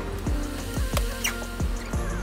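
Background music with a steady beat: a deep kick drum about twice a second over a held bass line.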